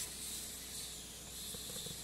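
Faint steady hiss of background noise, with a brief rustle of a sheet of paper being turned at the very start.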